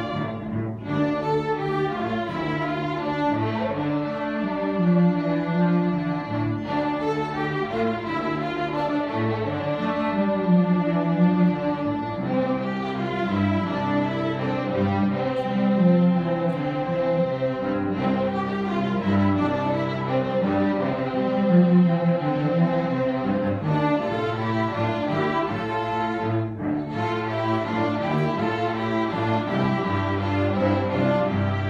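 String ensemble of violins, cellos and double bass playing live, bowed notes in continuous phrases over a strong low line, with brief breaks in the upper parts every few seconds.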